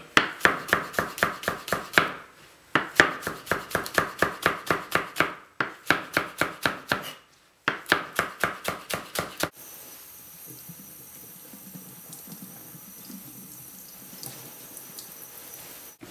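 Chef's knife rapidly slicing green onions on a plastic cutting board, about five quick chops a second, in several runs with short pauses. The chopping stops about two-thirds of the way through, leaving low, steady room tone.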